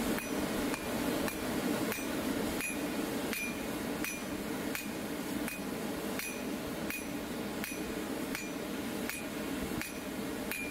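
Blacksmith's hammer striking hot steel on an anvil in an even rhythm, about three blows every two seconds, each with a short metallic ring. A steady low hum runs underneath.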